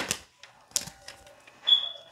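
Tarot cards being handled and sorted through: a sharp click at the start and a card snap just under a second in. Near the end there is a short, high ringing clink.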